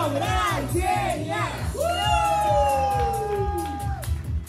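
Singing over an amplified backing track with a steady low beat, in short phrases that rise and fall, then one long held note from about two seconds in to the end of the song.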